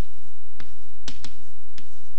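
Chalk tapping and clicking on a chalkboard as numbers are written: about half a dozen sharp, irregularly spaced taps.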